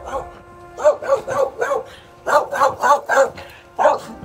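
A dog barking in two quick runs of sharp yelps, several barks a second, aimed at the skaters rolling past. Background music plays underneath.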